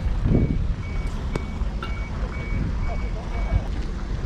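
A vehicle's reversing alarm beeping at a steady pitch, about two beeps a second, stopping shortly before the end. Low rumbling on the microphone runs underneath, with a heavier bump near the start.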